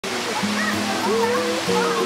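Small waterfall rushing steadily, under a song with held notes and a wavering melody line.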